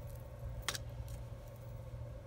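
A single light click about two-thirds of a second in, from a small metal jump ring and chain being handled, over a faint steady hum.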